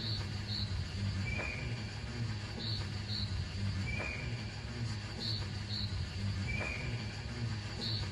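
Opening of an instrumental hip-hop beat: a steady low drone under a looped pattern of short high chirps and paired blips, repeating about every two and a half seconds.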